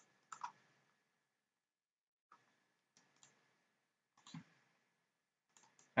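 A handful of faint, scattered computer mouse clicks.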